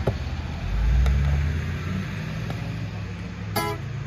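Acoustic guitar strummed lightly, with one firmer strum near the end, over a steady low rumble that is the loudest thing throughout and swells about a second in.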